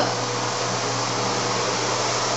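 A steady, even hiss with a low hum beneath it, unchanging, of the kind a fan or air handler makes.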